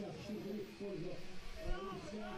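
Indistinct men's voices talking, quieter than the commentary around it.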